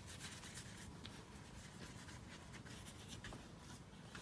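Faint scratching of a paintbrush stroking white paint across watercolor paper.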